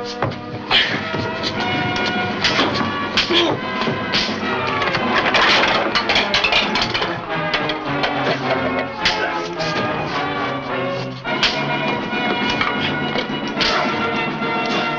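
Loud dramatic background music over a fistfight, with repeated sharp thuds and crashes of punches and bodies hitting furniture.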